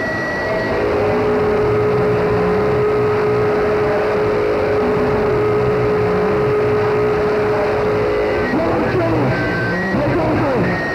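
Live power electronics noise: a dense, loud wall of distorted noise with a pulsing low drone and a single steady held tone over most of it. Near the end the held tone stops and warped, gliding voice-like sounds come in.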